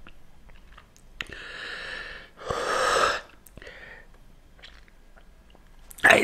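A man breathing out hard through his mouth: two long breaths, the second louder, then a short one, with small mouth clicks between. He is reacting to the burn of the chili sauce he has just swallowed.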